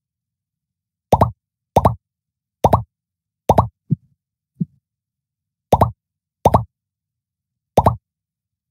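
A series of about seven short, plopping computer sound effects, each a click followed by a brief tone, less than a second apart with dead silence between.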